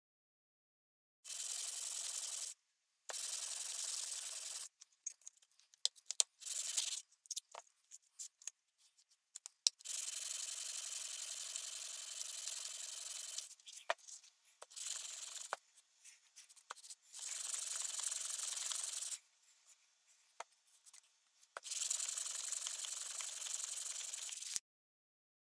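Steel mezzaluna blade being sanded by hand on a sheet of sandpaper: spells of steady scratchy rubbing a second to a few seconds long, broken by short pauses with scattered light clicks and scrapes.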